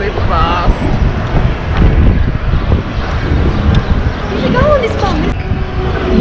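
Wind buffeting the camera microphone in a steady low rumble, with brief snatches of voices near the start and again about five seconds in.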